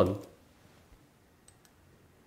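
A few faint, sharp clicks of a computer mouse, following the fading end of a spoken word.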